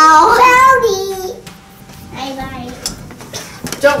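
A child's voice in a drawn-out, sing-song call for about the first second, then fainter children's voices.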